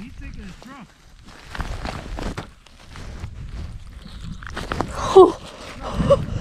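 Rustling and knocking of gloves and clothing close to the microphone as a smallmouth bass is hand-lined up through an ice-fishing hole, with a few short wordless vocal exclamations, one falling in pitch near the end.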